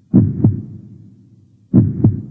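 Heartbeat sound effect: a slow, low lub-dub thump heard twice, about a second and a half apart.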